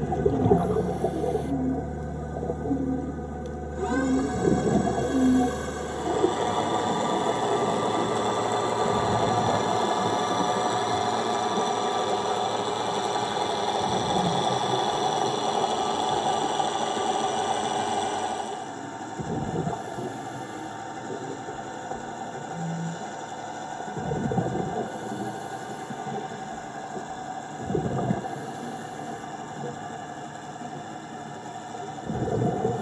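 Atlantis tourist submarine's electric thrusters heard underwater: a steady whine made of many tones, loudest for the middle stretch and then fading as the sub moves off. A few short low bursts come near the end.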